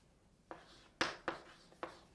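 Writing on a board: after a quiet half second, four quick pen strokes, each a short scratch that fades fast, the second the loudest.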